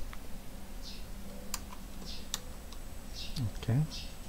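A few scattered taps and clicks of a computer keyboard and mouse while a value is entered into a settings field.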